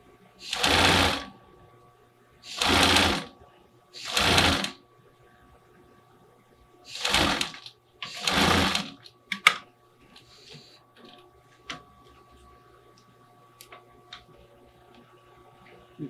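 Pfaff sewing machine stitching in five short runs of about a second each, with pauses between them as the fabric is guided, sewing a straight-stitch seam to attach a sleeve. A few sharp light clicks follow in the second half.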